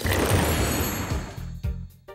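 Cartoon magic-transformation sound effect over music: a sudden crackling burst that fades away over about a second and a half, above a low steady musical tone.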